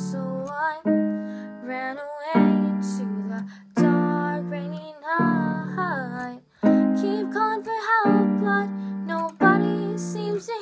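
A girl singing a slow original song over piano chords on a keyboard, the chords struck about every second and a half.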